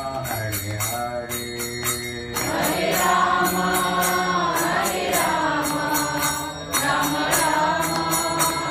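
A man singing a slow devotional chant into a microphone, holding long notes, over a steady rhythm of small metal hand cymbals struck about four times a second.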